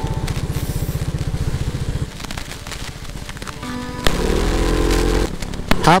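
Single-cylinder engine of a SYM 150cc New Fighter idling with an even, rapid low pulse for about two seconds, then quieter. About four seconds in, a short stretch of music with a deep bass note comes in suddenly and breaks off after about a second.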